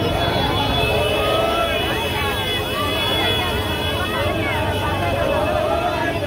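Dense crowd of many voices talking and calling out over the steady low rumble of truck engines, with a faint steady high tone running through.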